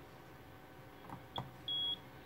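Handheld automotive alarm/key programmer beeping: a click with a short high beep as a key is pressed about one and a half seconds in, then a longer steady high beep near the end as it accepts the alarm module's password and moves on to its next step.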